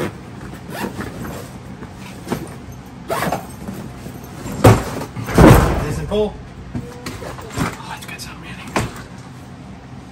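Rummaging through bags of shoes and clutter: fabric and plastic rustling and scattered knocks. A sharp knock comes a little before halfway, then a loud heavy thump as a suitcase is hauled out and set down.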